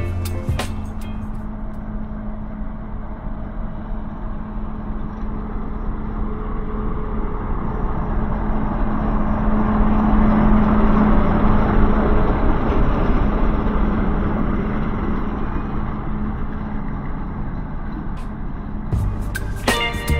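Diesel locomotive passing close by at low speed: a steady engine drone with running noise that builds to a peak about halfway through as it goes by, then fades as it moves away.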